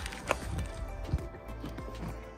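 A few light clicks and knocks from the car's interior fittings being handled, the sharpest about a third of a second in and again just after a second, over faint background music.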